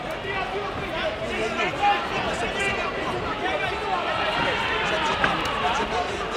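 Chatter of many overlapping voices in a large sports hall, with a single sharp knock a little after five seconds in.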